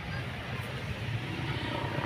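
Steady low rumble with faint voices of people talking.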